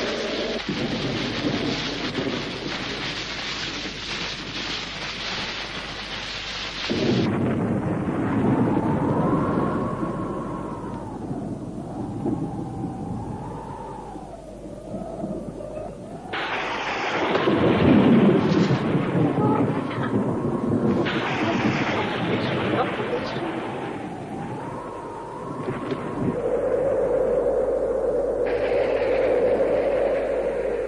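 Storm sound effects: a dense rain-like hiss for the first several seconds, then heavy rolling rumbles of thunder. A thin wavering tone rises and falls through parts of it, and a steady low tone is held near the end.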